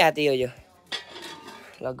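A clink of metal kitchenware about a second in, ringing briefly, with a voice at the start and near the end.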